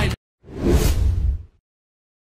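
The music cuts off abruptly. About half a second later a single trailer-style whoosh sound effect swells and fades over about a second, with a low rumble underneath.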